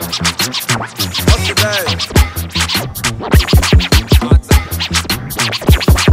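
Loud dance music played by a DJ over a deep, repeated beat, with record-scratch sweeps cut in over it.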